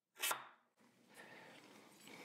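Mostly near silence, with one brief faint handling sound just after the start as a carbon arrow shaft is fitted with its insert and handled.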